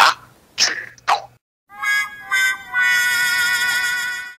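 A brief spoken phrase, then after a short gap an added musical sound effect: a few short pitched notes, then one steady held tone rich in overtones.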